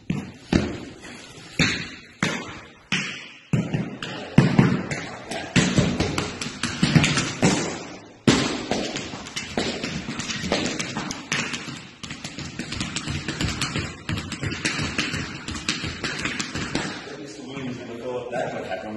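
New metal taps on leather boots striking a wooden floor in tap dancing: a few single taps spaced about half a second apart, then from about four seconds in a long run of fast tap steps.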